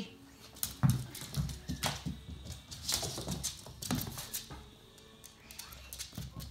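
A Cavalier King Charles Spaniel chasing a ball across a hardwood floor: a scattered series of sharp knocks and clicks from the ball and the dog's claws on the boards.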